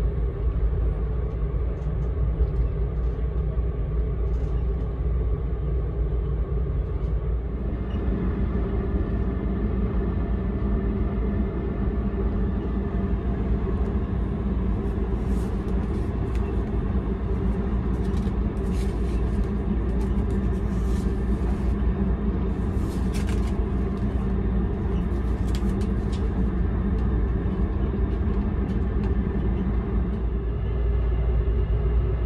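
Steady low rumble of a sleeper train car running along the track, heard inside the compartment, its pitch shifting slightly about a quarter of the way through. Near the middle come a few brief crisp rustles as the pages of a paper menu are handled.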